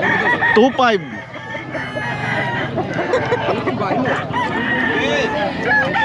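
Several gamefowl roosters crowing, their calls overlapping one after another at different pitches, with some clucking.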